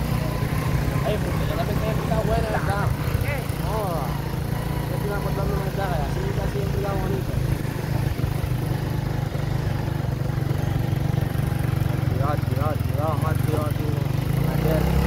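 Small motorcycle engine running steadily as the bike is ridden, a continuous low hum.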